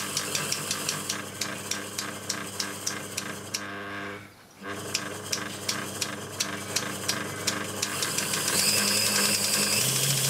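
Inkjet printer ink pump's small DC motor and gear mechanism running on variac power, a steady motor note with regular clicking about three times a second. It drops out for about half a second around four seconds in, then runs on, its note shifting near the end. It is pumping the wrong way, as the owner suspects.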